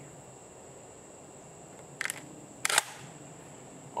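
Two short mechanical clicks from a Stoeger M3500 semi-automatic shotgun being handled: a light rattling click about two seconds in, then a sharper, louder clack a moment later.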